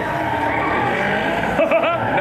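Drift cars' engines running at high revs with tyres skidding and squealing through a tandem drift. Near the end the engine pitch swings rapidly up and down.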